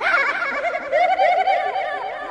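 Hardtekno track in a breakdown without the kick drum: layered high synth tones warbling up and down in quick, bird-like arcs.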